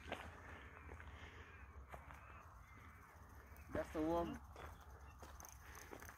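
Quiet open-air ambience: a low steady wind rumble on the microphone, with faint distant bird calls like crow caws in the first couple of seconds.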